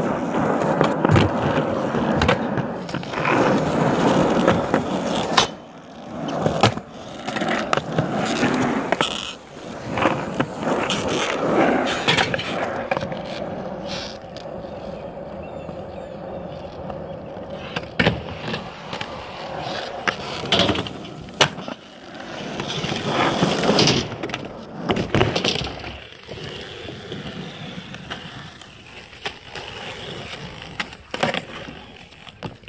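Skateboard wheels rolling on concrete, the noise swelling and fading as the board speeds up and slows, with a few sharp clacks of the board striking the ground.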